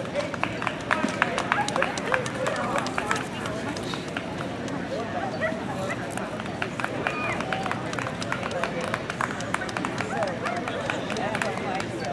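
Background chatter of many people talking outdoors, with a quick run of sharp clicks or taps over the first three seconds or so.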